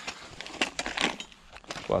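Camouflage fabric bag being handled: irregular rustling and crinkling of cloth, with a few sharper crackles about a second in.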